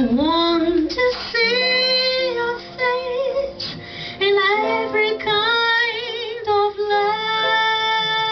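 A woman singing a slow jazz ballad with vibrato, accompanied by piano and double bass.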